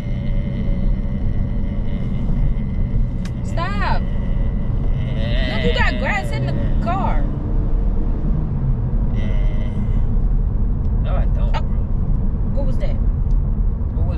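Steady road and engine rumble inside a moving car's cabin, with a few short bits of voice over it.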